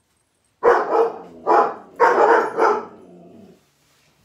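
A pet dog barking, about four barks in quick succession, set off by people out in the street.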